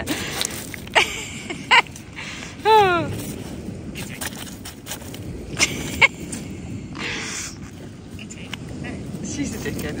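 A dog digging in shingle, its paws scraping and knocking the pebbles together in irregular clatters, a few sharp knocks standing out.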